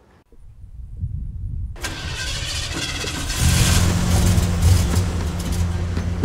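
Swamp buggy engine starting up. A low rumble builds, a hiss joins about two seconds in, and the engine settles into a steady idle about three and a half seconds in.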